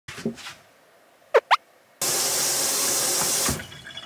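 A steady rush of running water that starts suddenly about two seconds in and lasts about a second and a half. Just before it come two quick rising whistle-like sweeps.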